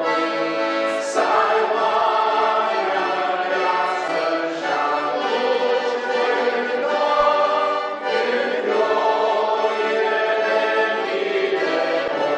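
A congregation singing a hymn in Romanian, led by a man's voice at the microphone, in steady unbroken song.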